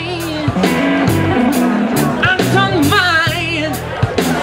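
Live electric blues band playing an instrumental passage: bass guitar, a drum kit with cymbal strikes about three a second, and a lead line bending with wide vibrato that gets stronger about halfway through.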